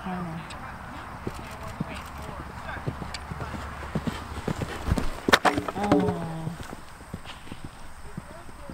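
A horse's hoofbeats on a sand arena, a run of soft thuds, with a loud sharp knock about five seconds in.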